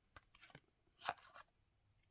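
Trading cards being slid and shuffled against one another in the hands: a few faint, brief scuffs, the clearest about a second in.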